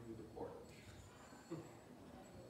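A man's voice, faint and halting: two brief utterances, about half a second and a second and a half in, separated by pauses.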